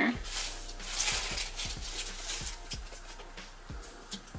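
Soft, breathy laughter without words, with scattered light knocks from objects handled on a table.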